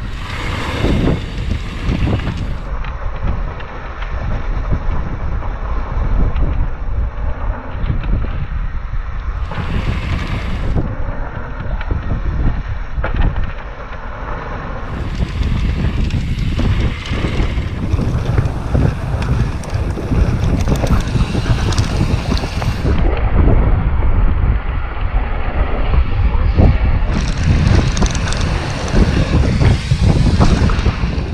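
Wind buffeting an action camera's microphone as a downhill mountain bike descends a dirt trail, with tyres on dirt and gravel and the bike knocking and rattling over bumps.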